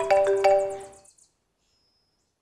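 Mobile phone ringtone: a short marimba-like melody of struck notes that stops about a second in, followed by silence.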